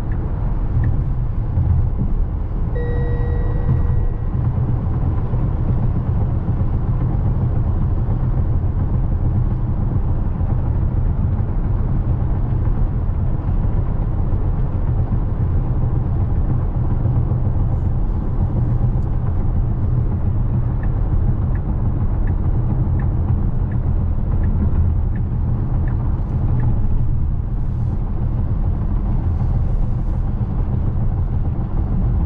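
Steady tyre and wind noise inside the cabin of an electric Tesla Model X cruising at highway speed, a low rumble with no engine sound. About three seconds in, a brief electronic tone sounds for about a second, and faint regular ticks come and go later on.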